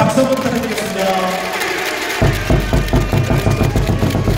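Arena PA sound: a voice over the hall's noise, then about halfway through loud cheer music with a heavy, fast drum beat cuts in.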